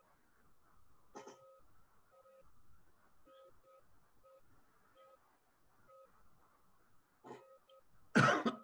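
Near silence, with faint short two-pitch beeps recurring at irregular intervals and two soft clicks, about a second in and near the end.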